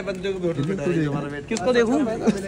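Several people talking at once, overlapping voices in a crowd.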